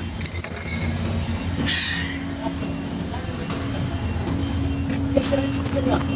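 A steady low mechanical hum runs throughout, with a few brief faint knocks and rustles on top.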